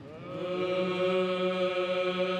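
Byzantine chant: male voice held on one long steady note, swelling in over the first half-second.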